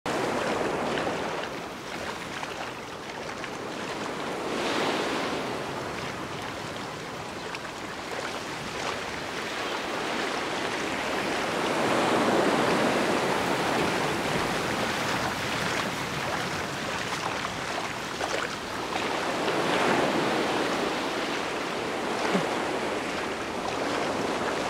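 Ocean surf breaking and washing up a beach, rising and falling in slow swells about every seven or eight seconds.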